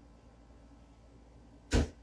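Faint room tone, then a short breathy burst near the end.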